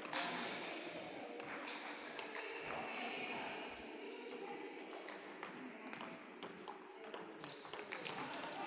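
Table tennis balls being struck and bouncing off tables, many irregular clicks from more than one table at once, echoing in a large hall.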